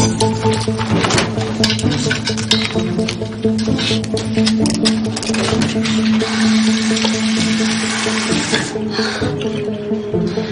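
Background music with steady held tones, with a tap running into a sink through the middle of it.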